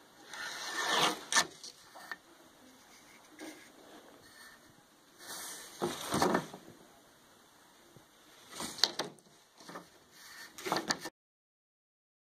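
Handling noises from a thin plywood strip being held and turned over a workbench: a few short clusters of scraping and light knocks, with the sound cutting off abruptly near the end.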